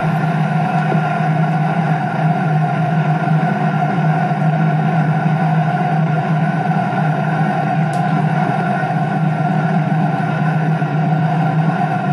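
Soundtrack of an old 1930s film recording: a steady, unbroken wash of sound with hiss and hum, no speech.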